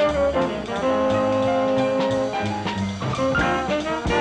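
A jazz quintet playing live: tenor saxophone and trombone over piano, double bass and drums. The horns hold one long note through the middle, then move into shorter notes, with drum strokes underneath.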